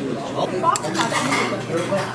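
Metal chopsticks clinking against a stainless steel bowl as noodles are lifted and stirred, with one sharp clink a little under a second in, over background voices.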